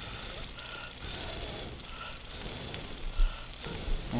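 Pork skin deep-frying in hot oil in an aluminium pot: a steady sizzle with scattered small crackles as the rinds puff up into chicharon.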